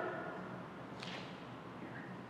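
Two faint, brief swishes of clothing as arms move back into a guard, about a second in and again near the end, over a low steady room hum.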